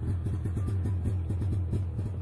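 An engine running steadily: a low hum made of rapid, even firing pulses.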